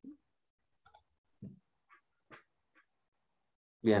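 Mostly silence with a handful of brief, faint noises scattered through it, then a man starts speaking near the end.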